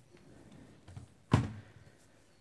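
A small tick, then one sharp knock just past the middle as a hand moves the Chuwi Hi12 tablet's screen and it rocks in the keyboard dock's hinge, which has a bit of wobble.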